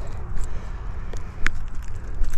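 Handling noise as gloved hands hold a largemouth bass by the lip: a few light clicks and knocks over a steady low rumble.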